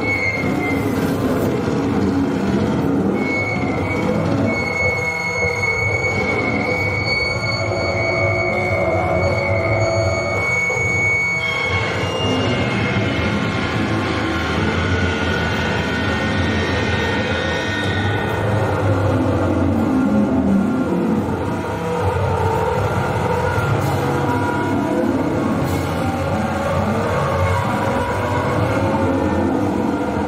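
Loud, dense distorted music from a powerviolence band playing live, with a high steady feedback-like squeal from about 3 seconds in until about 11 seconds in.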